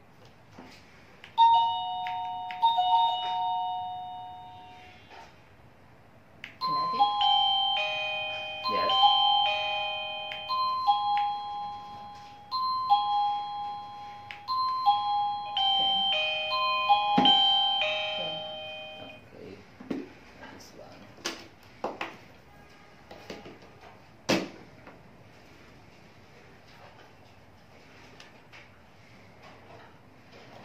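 A plug-in wireless doorbell chime receiver plays an electronic two-tone ding-dong twice. About five seconds later it plays a longer melody of bell-like notes stepping up and down for about twelve seconds. After that come a few sharp clicks and knocks of plastic devices being handled.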